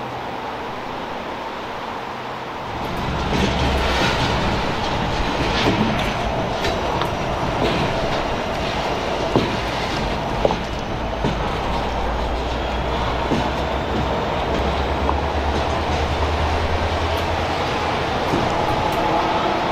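Freight train of loaded flatcars rolling past at low speed behind red diesel locomotives: a low, steady rumble with irregular wheel clicks and clanks, coming in about three seconds in after a quieter steady hum. Two sharper knocks stand out partway through.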